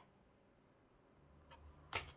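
Near silence, then a card being set down on the tabletop, with a faint tick and one sharp tap near the end.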